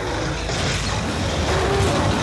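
Loud, dense commercial sound effects: a deep rumble with hissing on top, over faint background music.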